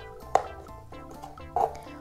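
Soft background music, with a sharp click about a third of a second in and a smaller knock near the end as hands handle the plastic toy house and its figure.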